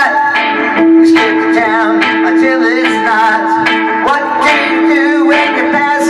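Live electric guitar played through a small amplifier, long sustained notes with wavering bends and vibrato on top.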